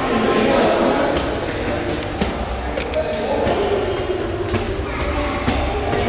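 Indistinct voices of several people echoing in a concrete stairwell, with a few short sharp knocks, as of footsteps on the stairs, around the middle.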